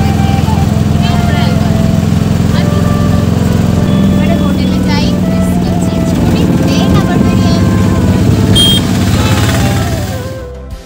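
Auto-rickshaw engine running steadily under way, heard loud from inside the open passenger cabin with wind on the microphone.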